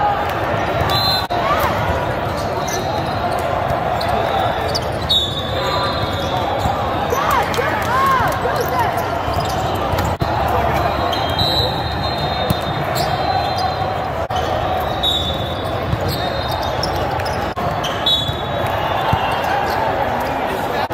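Volleyball being played in a large, echoing hall: sharp hits of hands on the ball scattered through the rally and short high sneaker squeaks on the court, over a steady din of many voices.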